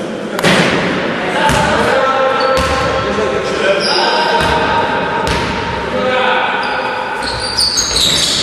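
Basketball game in a sports hall: the ball bouncing on the court floor with sharp, echoing knocks, sneakers squeaking, and players calling out.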